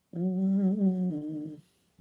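A person humming one sustained closed-mouth "hmm" for about one and a half seconds, stepping down to a lower pitch about a second in.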